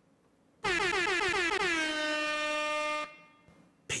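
A horn-like sound effect: one loud blaring note that wavers in pitch for its first second, then holds steady for about a second more and cuts off suddenly.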